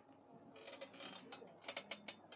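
A quick, irregular run of sharp mechanical clicks, like a ratchet or a small mechanism being worked, starting about half a second in.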